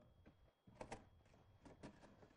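Near silence, with a few faint clicks and rustles, in two pairs, from a gift box being handled and opened by hand.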